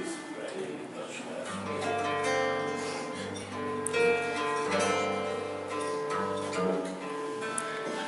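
Fado ensemble of Portuguese guitar, classical guitar and bass guitar playing an instrumental introduction: plucked melody over strummed chords, with the bass coming in about a second and a half in.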